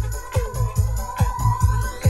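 Electronic dance music from a DJ mix: a steady four-on-the-floor kick drum at about two beats a second under a held synth tone.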